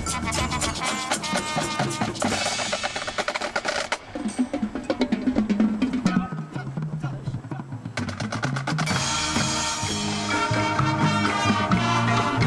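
Marching band playing: full ensemble with drums at first, then from about four seconds in a drum feature from the marching drumline (snare drums, tenor drums and bass drums) with the winds mostly dropped out. Around eight to nine seconds in, the full band with winds comes back in over the drums.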